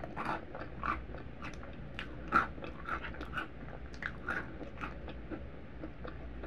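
Close-miked chewing of crunchy food, a quick run of irregular crisp crunches with one sharper, louder crunch about two and a half seconds in.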